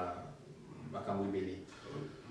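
A man speaking French in short, broken phrases with pauses between them.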